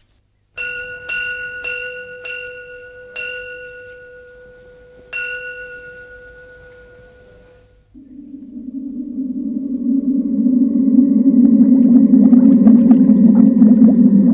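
A small bell struck six times, the strokes close together at first and then further apart, each ringing on and fading. About eight seconds in, a low steady drone swells up and grows loud.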